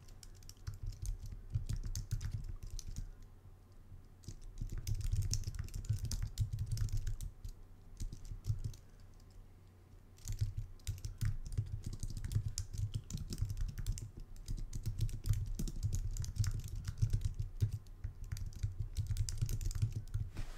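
Typing on a computer keyboard: quick runs of key clicks in bursts, with short pauses, and dull thumps through the desk.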